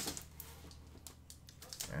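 Faint rustling and a scatter of small clicks and taps as a cardboard box and the packed items inside are handled and an item is pulled out.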